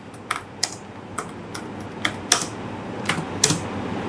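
Typing on a computer keyboard: separate key clicks at an uneven pace, with short pauses between them.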